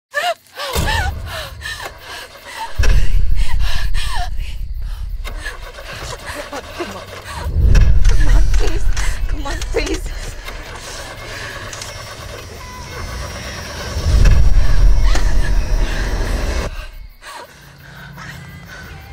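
Horror-trailer sound design: three deep bass hits, each swelling and fading over a few seconds, under a woman's frightened gasps and breathing.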